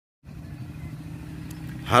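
A low, steady engine hum, as from a distant motor vehicle, starting a quarter second in; a man's voice begins right at the end.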